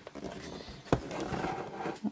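Handling noise: a soft rustling scrape with a single sharp click just under a second in.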